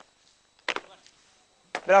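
Boots stamping on the ground during marching drill: two sharp strikes about a second apart, the second just before a man calls out a drill cadence.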